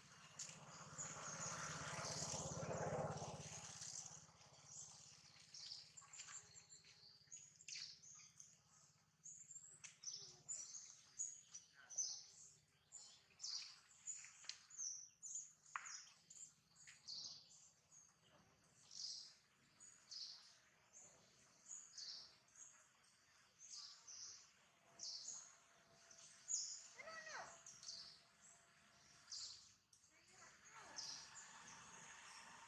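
Small birds chirping faintly in short, high calls, repeated irregularly throughout. A broad rush of noise swells and fades over the first few seconds.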